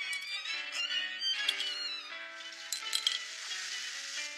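Background music from the soundtrack: a melody of held notes that change pitch every fraction of a second, with a few short sharp ticks partway through.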